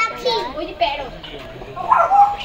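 Several people's voices, a child's among them, talking and calling out indistinctly, loudest near the end.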